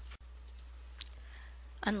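A steady low hum in a pause between spoken sentences, broken by a brief dropout just after the start and a single sharp click about a second in. A woman's voice starts again near the end.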